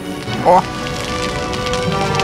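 Wooden bonfire catching light and crackling, a dense rain-like spitting of burning wood, under steady held tones of background music; a short exclaimed "Oh!" about half a second in.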